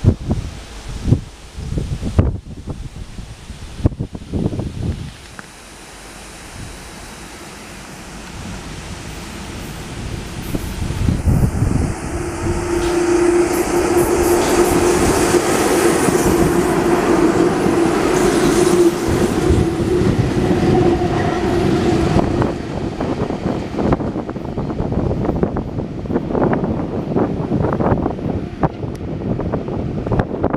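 Soviet VL11 3 kV DC electric freight locomotives passing close by on the track. Rail noise builds to a loud steady rush with a steady hum as the units go past, then eases, with wheel clatter over the rail joints near the end.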